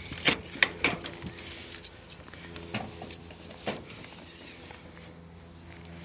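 Key and metal door of a cluster mailbox: a few sharp clicks and clacks in the first second, then two more a couple of seconds later, as the compartment is unlocked and opened. A faint steady low hum runs underneath.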